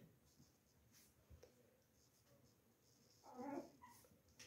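Near silence: room tone, with a few faint light ticks and a brief soft vocal sound near the end.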